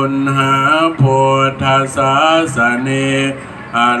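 A Buddhist monk chanting Pali blessing verses in a single male voice, holding long, steady notes phrase after phrase. There is a short pause for breath near the end.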